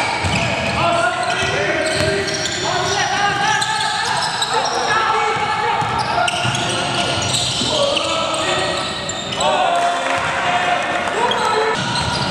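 Live game sound from an indoor basketball court: players calling out to each other, a basketball bouncing on the hardwood floor, and sneakers squeaking, all echoing in a large gym.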